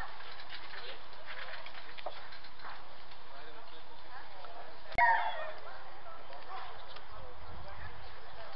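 Indistinct voices of people talking, with one sharp click about five seconds in, after which a voice is briefly louder.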